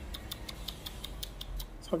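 A small poodle nibbling at a person's fingers with its front teeth, a quick even run of little clicks about five a second.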